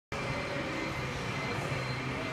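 Steady machine hum of a driverless electric forklift moving through an automated warehouse, a low drone with faint steady high-pitched tones over it.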